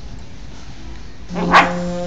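A dog barks once, briefly, about a second and a half in, after quiet hiss. Steady held musical tones start just before the bark.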